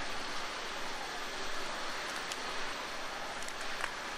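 A steady, even hiss of outdoor background noise, with a few faint ticks near the middle and end.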